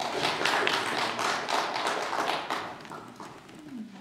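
Scattered applause from a small congregation after a piano-accompanied song, a dense patter of hand claps that dies away after about two and a half seconds.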